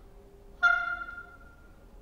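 A single sharply attacked high note from a melodic instrument in a contemporary chamber piece for oboe, violin and percussion. It starts about half a second in and dies away over about a second, above a faint low held tone.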